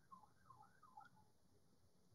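Near silence: faint room tone on a video call, with a few very faint wavering tones in the first second.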